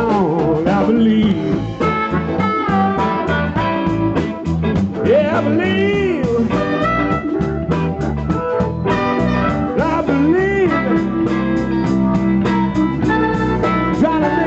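Live blues band playing a slow soul-blues, electric guitar and rhythm section, with a lead line that bends up and down in pitch over a steady groove.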